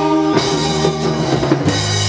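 Live band playing an instrumental passage without vocals: held accordion chords over drum kit and percussion, with a strong low bass note coming in near the end.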